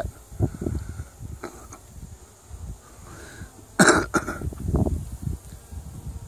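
A man coughing: two sharp coughs about four seconds in, followed by a rougher throaty stretch, over a low rumbling background.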